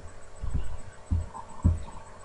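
Four soft, deep thumps about half a second apart, over a faint steady hum.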